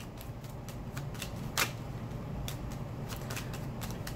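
A deck of Lenormand cards being shuffled by hand: a run of light card flicks and clicks, with one sharper snap about a second and a half in.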